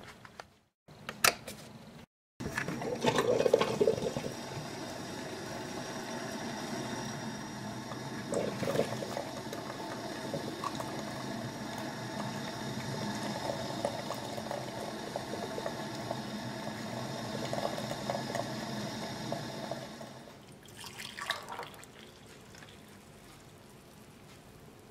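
Technivorm Moccamaster drip coffee maker brewing: a steady watery running and bubbling as hot water passes through and coffee streams into the glass carafe. It dies down near the end, with a few brief knocks.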